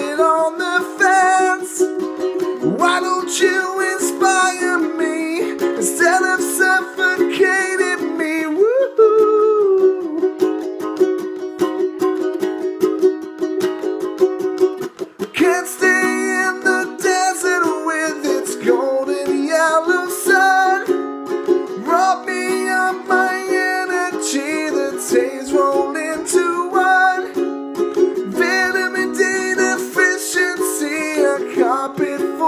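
Ukulele strummed steadily through an instrumental passage of a song, with a brief dip in the playing about halfway through before the strumming resumes.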